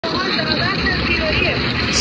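Indistinct voices under a steady, loud rushing noise.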